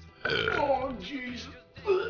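A long, loud belch over background music, followed near the end by a short vocal outburst.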